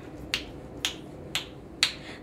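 Four finger snaps, evenly spaced about two a second, counting in the beat for an a cappella song.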